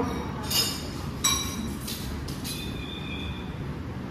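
Metal spoon clinking against a ceramic soup bowl three times, each clink ringing briefly, the last ringing longest, over a steady low background rumble.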